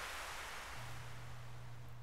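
Small waves breaking and washing up a sandy beach, a soft rush that swells and then fades away.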